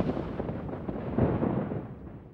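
A thunder sound effect: a rumbling peal that dies away, swelling again about a second in before fading out near the end.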